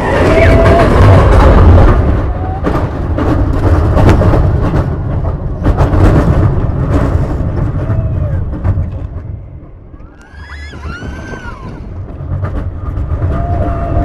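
Onboard a launched shuttle-loop roller coaster: loud rumble and clatter of the train's wheels on the steel track, with wind on the microphone. About nine seconds in the noise drops away as the train slows near the top of the vertical spike, and riders' high shrieks stand out; the rumble picks up again near the end as the train rolls back down.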